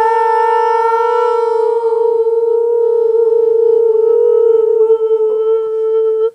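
A girl's voice holding one long sung or hummed note at a steady pitch throughout.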